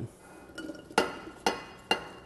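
Glass bowl clinking against a stainless steel saucepan as diced peaches and plums are tipped into the pan: three sharp knocks, each with a brief ring, starting about a second in and about half a second apart.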